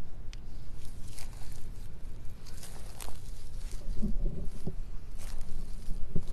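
Steady low outdoor rumble with light rustling in dry grass, and soft footsteps on the grass verge that become distinct about four seconds in.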